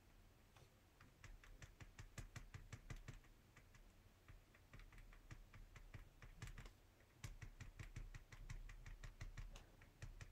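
Faint, rapid taps of a paint pen's tip dabbed onto paper to make tiny dots, several taps a second in runs with short pauses.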